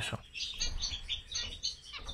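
Zebra finches calling: a rapid run of short, high chirps. They have the nasal, horn-like call typical of the species.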